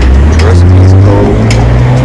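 A motor vehicle's engine running close by on the street, a loud low drone that rises in pitch about a second in as it speeds up.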